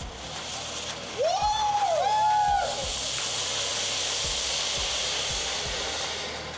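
Ground fountain firework (flower pot) spraying sparks with a steady hiss, fullest from about three seconds in. Just before that, two rising-and-falling whistles, one after the other, are the loudest sound.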